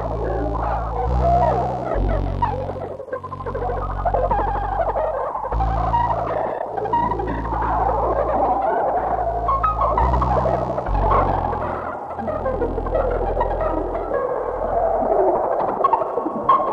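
Electronic music: sustained low bass tones that shift pitch every one to four seconds under a dense, fluttering mid-range texture.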